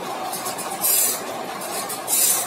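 Automatic band saw blade sharpening machine running, its grinding wheel rasping against the saw teeth in a steady cycle: a bright grinding hiss about every 1.3 seconds over the machine's constant running noise.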